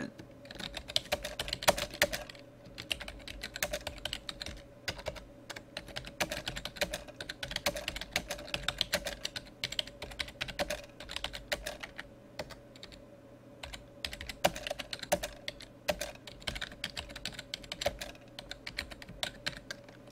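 Typing on a computer keyboard: runs of quick keystrokes with a few short pauses, over a faint steady hum.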